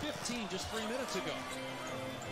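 Game broadcast audio at low level: a basketball being dribbled on a hardwood court under a TV commentator's voice.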